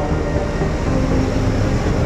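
Steady low rumble of a road-rail excavator's engine as the machine travels along the railway track.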